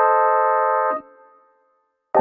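Electronic keyboard playing a single chord, held for about a second and then released, leaving silence.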